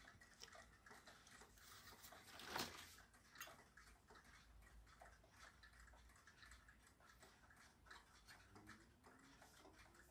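Near silence: room tone, with one faint brief sound about two and a half seconds in.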